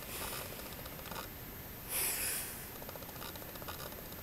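Quiet room tone with faint clicks and rustles from a handheld camera being moved about. A short breathy hiss comes about two seconds in.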